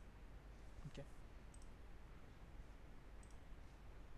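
Faint computer mouse clicks, a quick pair about a second and a half in and another near the end, over a low steady hum.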